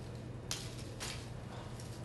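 A sharp snip of hand pruning shears making a small tipping cut, taking a camellia shoot back to a leaf bud, with a fainter click about half a second later.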